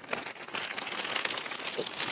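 Plastic packaging crinkling and rustling continuously as a package is opened by hand.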